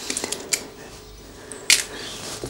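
Light clicks of small metal tools and parts handled on a workbench, with one sharper, louder click near the end over a faint hiss.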